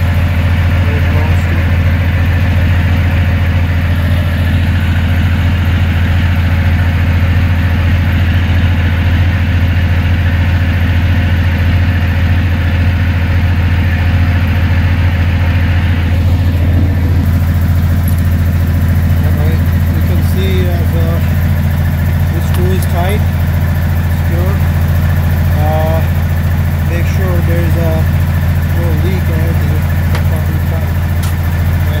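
Semi truck's diesel engine idling steadily, a deep even rumble.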